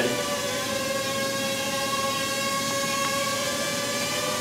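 Ryze Tello mini quadcopter hovering, its propellers giving a steady buzz.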